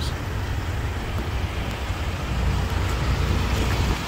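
Steady low rumble of nearby road traffic.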